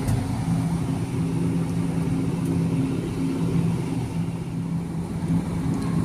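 Steady low hum of supermarket freezer display cases, a machine drone with a few low pitched tones over a faint noisy hiss.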